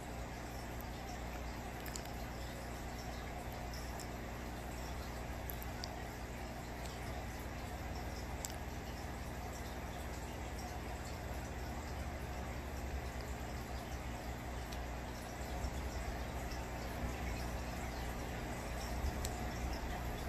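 Aquarium equipment running: a steady low hum over an even faint hiss, with a few faint clicks.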